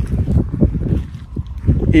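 Wind buffeting the microphone outdoors: a steady low rumble, with a man's voice coming back in near the end.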